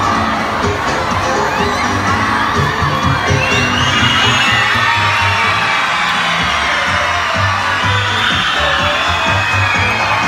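A circus audience, many of them children, shouting and cheering during a ball game in the ring, over music with a steady low beat. A swell of shouts rises about three to four seconds in.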